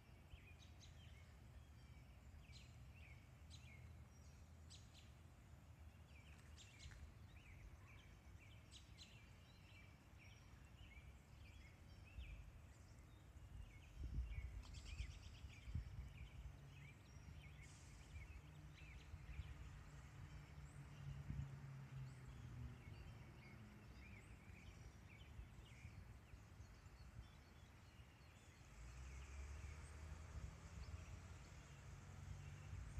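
Faint woodland ambience: small birds chirping in short repeated calls, thickest in the first two-thirds, over a low rumble that swells about halfway through.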